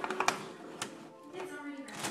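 A few short plastic clicks as the cap is screwed back onto a plastic gallon milk jug, the loudest near the start. Music from a television plays in the background.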